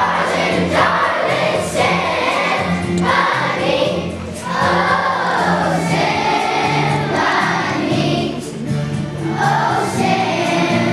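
Children's choir singing a song with instrumental accompaniment under the voices.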